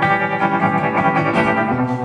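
Guitar alone: an archtop guitar strummed through a live sound system, chords ringing between a few fresh strums in a country song accompaniment.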